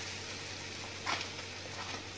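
Buttered sandwich sizzling quietly on a hot non-stick tawa, butter side down, as it toasts. There is a brief louder burst of hiss about a second in.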